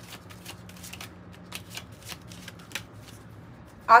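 Hands shuffling a deck of tarot cards: a run of quick, irregular card clicks and flicks.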